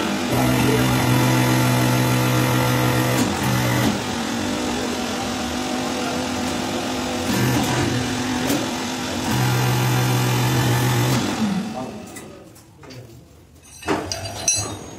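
Hydraulic press's motor and pump running loudly under load, a steady low hum whose tone drops out and comes back a few times as the ram works the stacked dies, then winding down about 12 seconds in.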